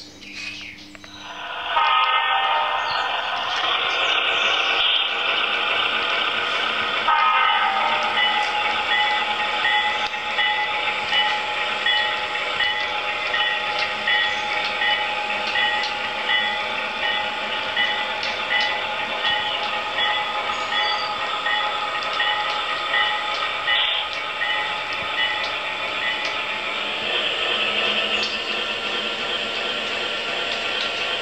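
HO-scale model freight train with a diesel locomotive running along the track, starting about two seconds in. It gives a steady mechanical hum, with a fainter tone repeating about one and a half times a second and scattered small clicks.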